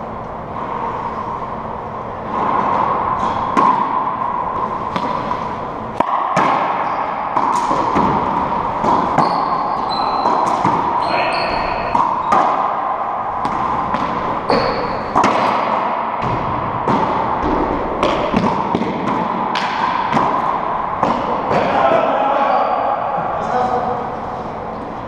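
Racquetball rally in an enclosed court: the hollow rubber ball smacks off racquets, walls and floor many times at an uneven pace, each hit echoing, with short sneaker squeaks on the hardwood floor in the middle of the rally.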